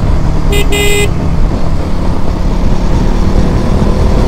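Two quick horn toots about half a second in, a brief one followed by a slightly longer one, over the steady rumble of a motorcycle riding on the open road.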